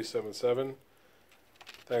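A man's voice finishing a sentence, then a pause of near silence broken by a few faint clicks shortly before he starts speaking again at the very end.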